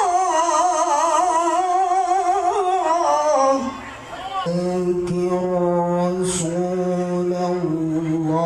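A man reciting the Quran in the melodic, ornamented tilawah style. One long phrase with a wavering pitch slides down and ends about three and a half seconds in. After a short breath, a new phrase starts lower and is held fairly steady.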